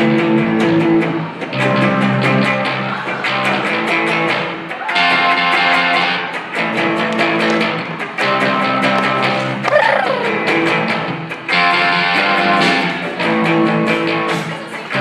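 Live amplified electric guitar and bass guitar playing an instrumental rock passage. The guitar is strummed in a steady, even rhythm and the chord changes every couple of seconds.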